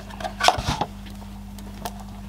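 A few short clicks and knocks as a small test meter and its probe leads are handled and set down on a workbench, the loudest about half a second in and another near the end, over a steady low hum.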